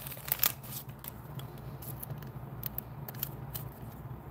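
Soft plastic rustling and a few light clicks as a chrome trading card is slid into a thin, clear plastic sleeve, over a steady low room hum.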